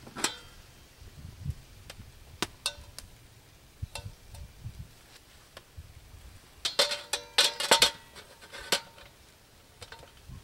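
Metal domed grill lid and tongs clinking: a few light clinks, then a cluster of ringing metal clanks about seven seconds in, with one more shortly after, as the lid is set down against the side of the grill.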